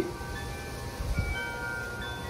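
Soft chime notes struck one after another, each ringing on so that they build into a held, shimmering chord, with a faint low thump about a second in.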